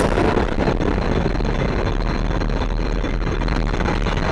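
Loud, steady rumbling roar with a heavy low end, the sustained roar of an explosion sound effect.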